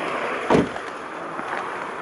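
A car door, the 2007 Toyota RAV4's, shut with one solid thump about half a second in, over a steady background rush.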